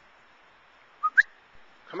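A person whistling to call a dog: two short whistle notes about a second in, the second a quick rising chirp and the louder of the two.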